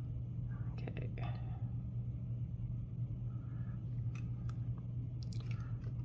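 Faint taps and clicks of wooden craft sticks and small plastic mixing cups being handled on a tabletop, over a steady low hum.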